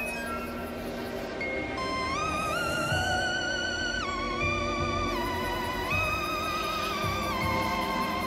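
Spooky background music; about two seconds in a wavering lead melody enters, sliding up and down between held notes.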